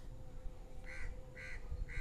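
A bird calling three times in the background, short calls about half a second apart, over a faint steady hum.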